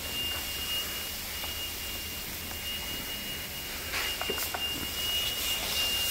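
A smoke alarm sounding a steady high-pitched tone, fading in the middle and clear again for the last two seconds, over a steady hiss with a few faint knocks about four seconds in.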